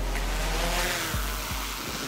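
Large camera quadcopter's propellers spinning up, a rushing noise that swells about a second in as the drone lifts off, over background music with a deep bass line.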